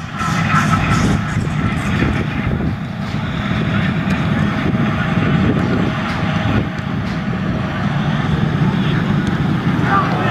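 A diesel locomotive's engine running with a steady low rumble.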